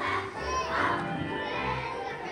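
A group of young children singing together with a musical accompaniment that carries steady low bass notes.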